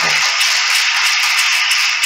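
A congregation clapping loudly and steadily, a dense round of applause given as a 'mighty hand of praise'.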